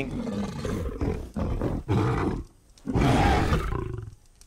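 Designed sound effects for a cartoon Tyrannosaurus rex: deep, rough growls in a few phrases, then a short pause and a louder roar about three seconds in.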